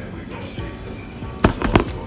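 Three quick hand claps about one and a half seconds in, over steady background music.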